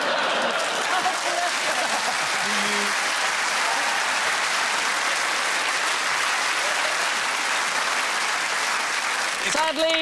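Studio audience applauding, a dense, steady clapping that holds at an even level for about nine and a half seconds and fades just before the end.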